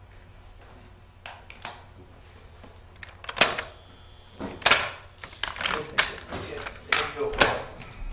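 A quiet room, then from about three seconds in several sharp knocks and clatters of objects on tables, amid rustling and indistinct murmured voices.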